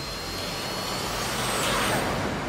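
Bell UH-1 "Huey" helicopter in flight, a steady dense rotor-and-engine noise that grows a little louder and swells near the end.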